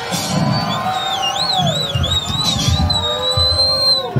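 Heavy metal band live: a high electric-guitar squeal wavers up and down, then settles into a held note over drums, and stops sharply as the song ends.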